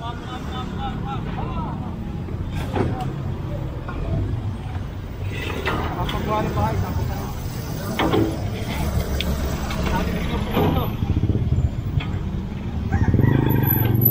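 Low steady rumble of street traffic and vehicle engines, with scattered voices and a few sharp knocks as scrap plywood and lumber boards are handled.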